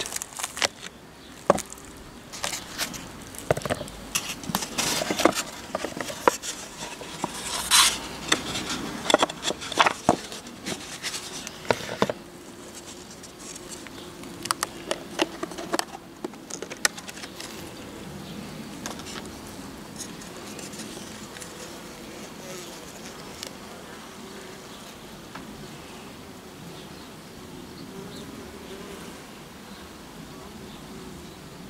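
Honeybees buzzing in a steady low hum from an opened Apidea mini mating nuc. Over roughly the first twelve seconds, many short clicks and scrapes come from the hive's plastic cover and comb frames being handled.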